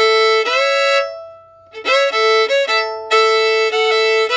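Fiddle playing bowed double stops, sliding up into notes against a held A string. A short phrase ends about a second in, and after a brief pause a second slid double-stop phrase follows.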